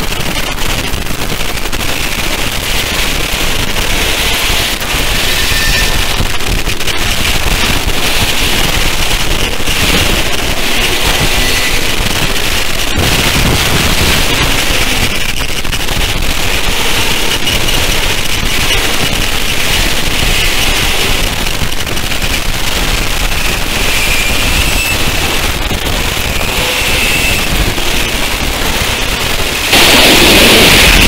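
Harsh noise music: a loud, unbroken wall of distorted, crackling electronic noise, brightest in a hissing upper band, with no voice.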